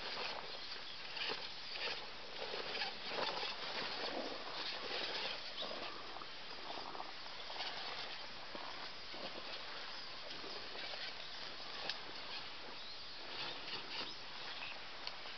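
Irregular rustling and light crackling of long grass and twigs being brushed and pushed through, with scattered small ticks and no steady motor tone.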